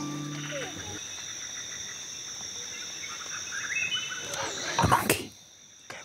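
Tropical rainforest ambience: insects holding two steady high-pitched tones, with scattered animal calls that rise in pitch. The calls grow louder about five seconds in, then the sound drops away sharply just before the end.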